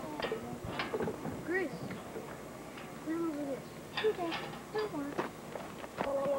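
Indistinct voices of people talking, with a few short, sharp clicks or knocks scattered among them.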